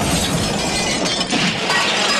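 Sound effect of a house roof caving in: a sustained, dense crash of falling timber and debris, with many small knocks inside it.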